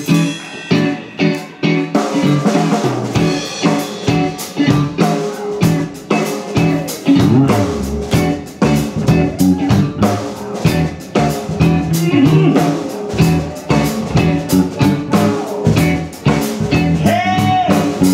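Live rock band playing an instrumental passage: electric guitar, bass guitar and drum kit, with a steady drum beat throughout.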